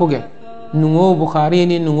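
A man's voice in a drawn-out, chanting delivery, holding long level notes, with a short pause just after the start.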